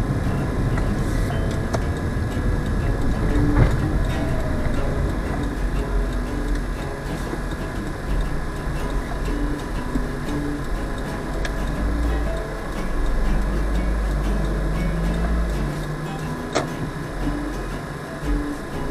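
Engine and road noise of a vehicle driving steadily, with a faint steady high whine and a couple of short knocks, one early on and one near the end.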